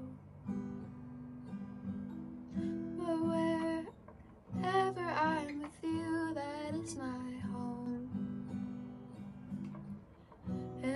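Strummed acoustic guitar playing an instrumental passage of a ballad, sustained chords with a melody line over them.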